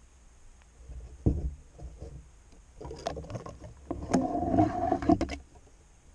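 Handling noise of a crossbow with a camera mounted on it being lifted and moved about: a sharp knock about a second in, then a run of bumps, rubs and a brief scrape from about three to five seconds in.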